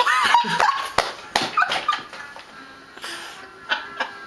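A young child's high-pitched wordless vocal outburst, the voice gliding up and down in pitch, in reaction to the sour taste of unsweetened cranberry juice. A short sharp knock comes about a second in, followed by shorter breathy vocal sounds.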